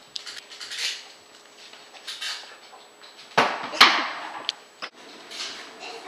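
Irregular knocks and clatters, a handful of short hits, with the loudest two close together a little past halfway.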